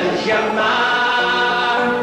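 Live folk song: several voices singing together on long held notes.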